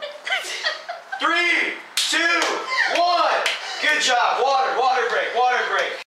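High-pitched voices talking throughout, with a sharp slap about two seconds in.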